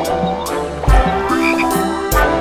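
Cartoon frog croak sound effect over instrumental children's backing music with a drum beat.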